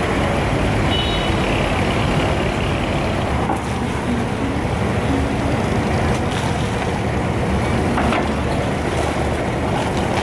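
The diesel engine of a wooden abra water taxi running steadily as the boat creeps into its berth. There is a short high beep about a second in.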